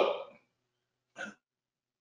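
Mostly dead silence on a noise-gated video-call line: the drawn-out end of a man's spoken "so" at the start, then one very short vocal sound a little over a second in.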